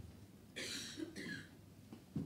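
A faint cough in a meeting room: two short bursts about half a second apart.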